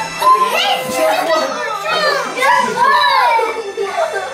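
Children's high-pitched voices wailing and crying out in distress, without clear words.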